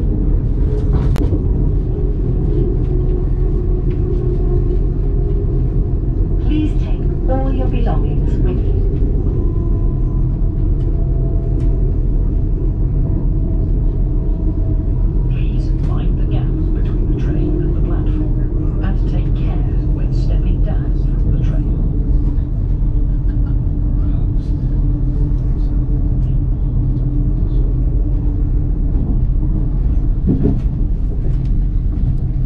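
Steady low rumble of a passenger train running, heard from inside the carriage. Indistinct voices come and go over it, mostly in the middle stretch.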